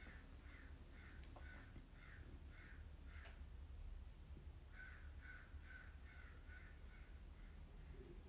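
Faint crow cawing: one run of short caws, about two a second, then after a pause of about a second another run that fades away, over a low steady hum.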